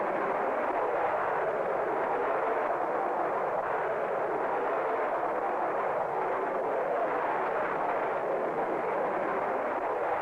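Jet aircraft engines in flight, a steady even roar that does not change.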